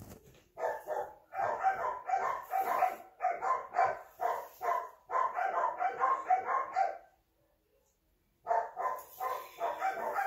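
Dog barking in a rapid run, about three barks a second; the barking breaks off about seven seconds in and starts again a second and a half later.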